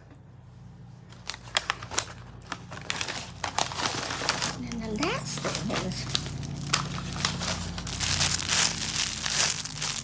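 Crinkly plastic packaging rustling and crackling as a packaged scarf is handled and pulled out, in many small sharp crackles that grow louder through the second half.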